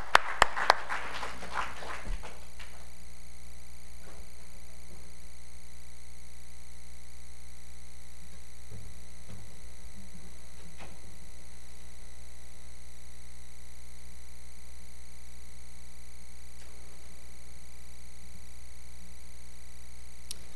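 A few sharp hand claps of brief applause in the first second. Then a steady electrical mains hum, with a few faint knocks.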